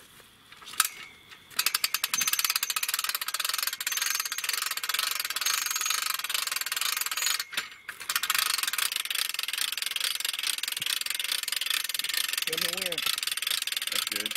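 Ratcheting hand hoist on a portable deer-hoist tripod, clicking rapidly and steadily as a deer carcass is winched up. The clicking stops briefly about halfway through, then resumes.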